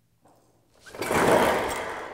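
A pull-down projection screen drawn down with a hooked pole, its roller and fabric rattling as it unrolls; the sound swells suddenly about a second in and then fades away.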